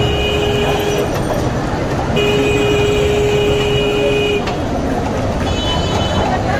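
A horn sounding in long, steady blasts: one ending about a second in, a second lasting about two seconds in the middle, and a short one near the end, over constant street noise.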